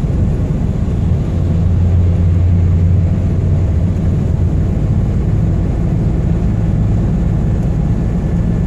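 Truck engine and road noise heard inside the cab while driving slowly in town: a steady low drone that swells a little in the first few seconds, then settles.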